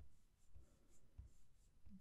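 A stylus tip tapping and sliding on an iPad's glass screen as short vertical lines are drawn: a few faint taps about half a second apart, with a light scratch.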